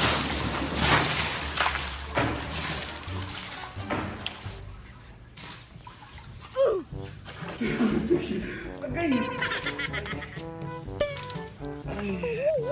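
A swimmer diving into a pool, splashing hard for the first few seconds, then music with pitched notes takes over for the rest.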